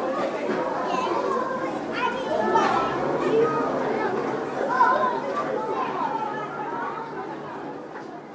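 Crowd of children's voices in a school, many talking and calling out at once in an unbroken hubbub that fades down near the end.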